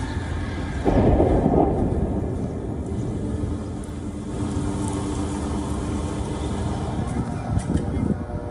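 Deep rolling rumble of an explosion in a built-up area, swelling loudly about a second in and then dying down into a low, thunder-like rumbling, with a few sharp cracks near the end.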